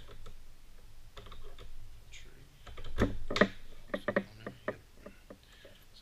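Steering-damper mounting bracket and its bolts being handled and fitted onto a motorcycle's top triple clamp: light clicks and taps of small metal parts, louder handling noise about three seconds in, then several sharp clicks.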